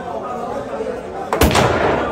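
A single sharp crack of a pool shot as the cue and balls strike, about a second and a half in, followed by a brief rush of noise.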